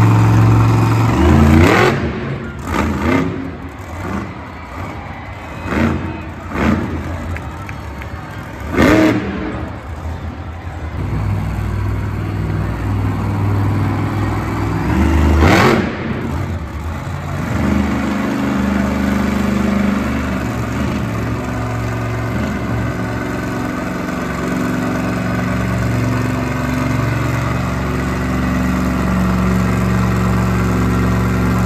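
Monster truck engines, supercharged big-block V8s, revving in a string of sharp bursts through the first half. From a little past halfway, the engine runs in a long, steady drone as a truck holds a wheelie.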